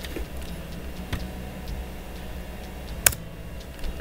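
A few sharp, isolated clicks from working a computer's keyboard and mouse, the loudest about three seconds in, over a low steady hum.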